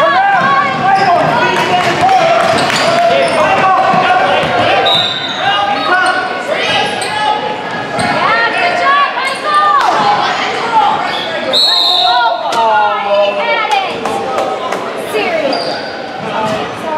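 A basketball bouncing on a hardwood gym floor during a youth game, with players, coaches and spectators calling out, the sounds reverberating in the large hall.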